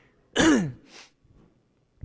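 A man clearing his throat once, a short rough sound that falls in pitch, about half a second in, followed by a brief faint murmur and then quiet.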